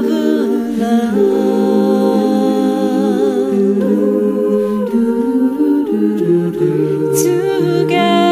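Background music: an a cappella vocal group humming and singing held notes in layered harmony, without instruments.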